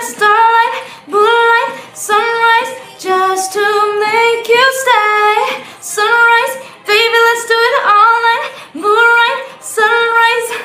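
A woman singing in a high voice, in short held phrases about a second each, many sliding up into their note, with brief breaths between.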